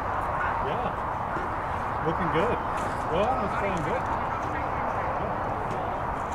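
Distant shouted voices: a few rising-and-falling calls about two to four seconds in, over a steady rushing background noise.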